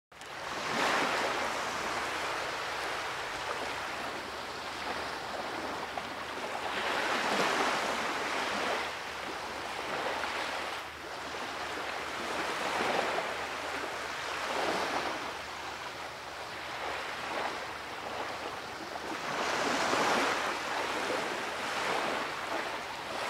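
Small waves washing onto a Lake Michigan beach, a steady rush that swells and eases every several seconds.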